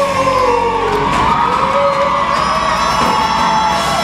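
Live rock band playing on a school auditorium stage, electric guitars and drums under long held notes, with some whoops from the audience.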